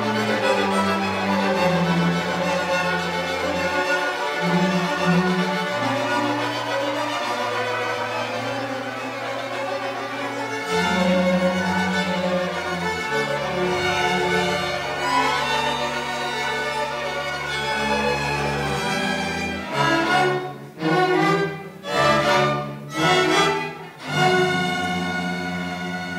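A student string orchestra of violins, cellos and double bass playing a piece together. In the last few seconds it plays a series of about four short, separated chords, each cut off sharply.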